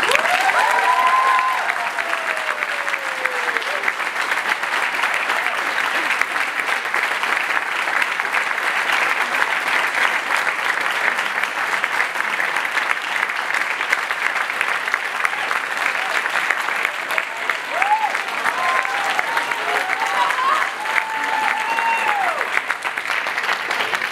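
Audience applauding steadily and at length, with whoops and cheers rising above the clapping in the first few seconds and again near the end.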